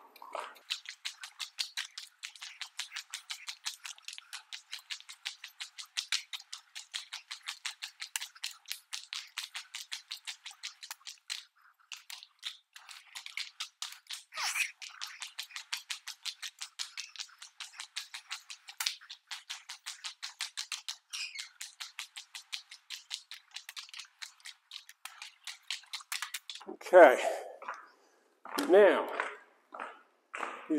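Rapid, even clicking, about four a second, from spreading wet epoxy across a concrete floor with a squeegee while walking in spiked shoes. A man's voice speaks briefly near the end.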